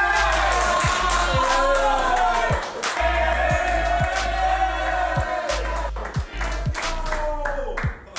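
A group of young men shouting and cheering over loud music with a deep bass and a steady drum beat.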